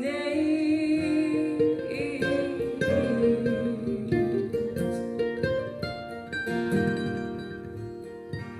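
Acoustic guitar and F-style mandolin playing together in a folk song, a passage between sung lines.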